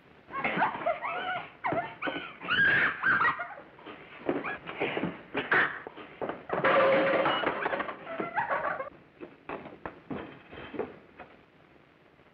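A violent scuffle: wordless, wavering cries and shouts come one after another, with knocks and thumps between them. The cries stop near the end, leaving only a few scattered knocks.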